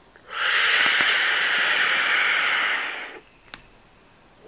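Steady airy hiss of a long draw, about three seconds, through the Loop rebuildable dripping atomizer (RDA), a vape atomizer set up here with a single flat wire coil placed directly over its airflow; a short click comes just after it stops.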